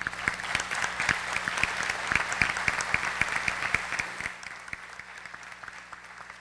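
Audience applauding, starting all at once and thinning out over the last two seconds.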